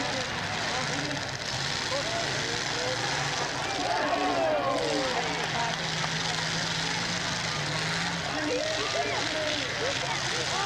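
Several demolition derby cars' engines running and revving together in a steady, noisy din, with crowd voices calling out over it.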